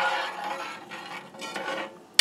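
A metal spoon stirring a pot of boiling sauce in a heavy oval pot, the spoon scraping and clinking against the metal over the sauce's bubbling. The noise starts abruptly and fades gradually.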